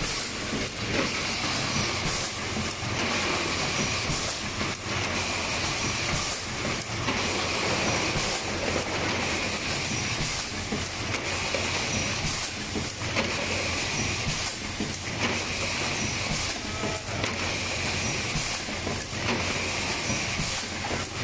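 Yawei YW-L6S six-cavity full-electric PET blow moulding machine running in production, a steady mechanical noise with clicks and knocks from the moving mechanism. A hiss of compressed air comes about every two seconds, in step with the machine's two-second blowing cycle.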